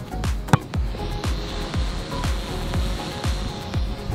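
Background music with a steady beat, with one sharp knock about half a second in.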